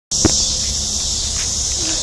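Steady, high-pitched drone of insects chorusing, with one brief knock right near the start.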